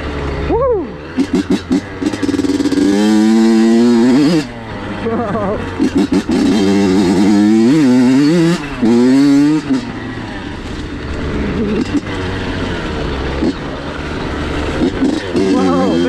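Honda CR85's small two-stroke single-cylinder engine revving up and down while being ridden, its pitch climbing with each burst of throttle and falling back between, with several short choppy breaks in the sound as the throttle is chopped and blipped.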